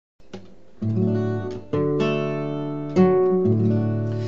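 Acoustic dreadnought guitar fingerpicked in a blues style: a short phrase of plucked chords left to ring, a new chord about every half second to a second.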